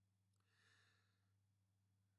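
Near silence: a faint steady electrical hum, with a very faint breath from the speaker starting about half a second in and lasting under a second.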